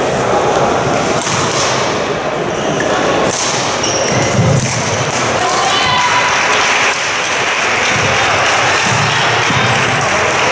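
Badminton rally: rackets striking the shuttlecock with sharp hits, feet thudding and shoes squeaking on the court floor, with a reverberant hall din of voices.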